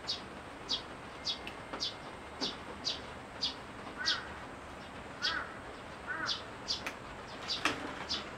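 Birds calling: a short high note repeats about twice a second, and three lower calls come in the middle. Near the end come two sharp clicks from the bamboo strips being worked with a knife.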